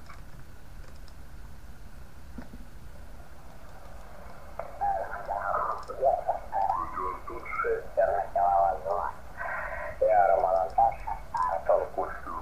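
Receiver speaker hissing with band static. About four and a half seconds in, a ham radio operator's voice comes through as the receiver is tuned onto a 20-metre-band phone signal. The voice sounds thin and narrow, cut off above the middle range.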